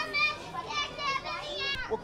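Several children's high-pitched voices chattering and calling out over one another.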